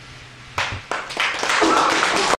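Audience clapping, beginning about half a second in and quickly swelling to full applause.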